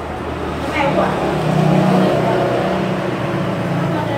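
Indistinct voices talking, loudest in the middle, over a steady low hum.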